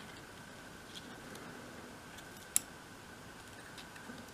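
Faint small clicks and taps of metal tweezers against the tiny items in a miniature wicker basket as they are nudged into place, with one sharper click about two and a half seconds in.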